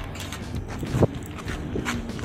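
Light handling noise with one sharp knock about a second in, as a small metal triangular key for the laser cutter's lower door is picked up off the cabinet top.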